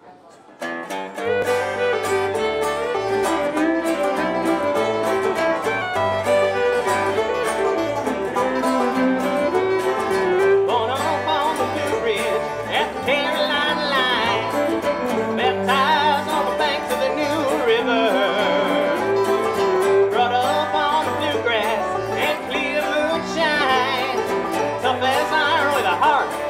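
A bluegrass band playing an instrumental introduction of banjo, guitar, electric bass and fiddle, which starts about a second in. From about ten seconds in, a wavering fiddle melody rises above the picked strings.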